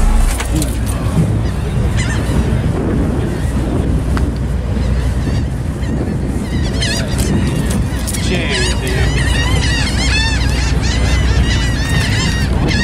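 Rapid, repeated honking calls that start about halfway through and keep going, over a steady deep bass hum and outdoor background noise.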